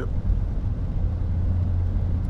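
Road noise inside a moving car on a wet highway: a steady low rumble with an even hiss of tyres on wet pavement.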